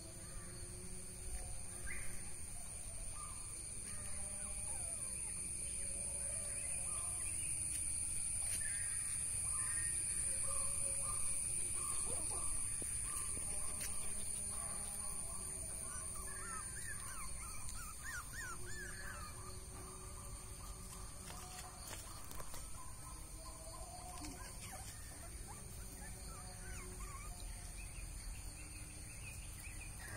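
Crows cawing on and off over a steady high-pitched drone.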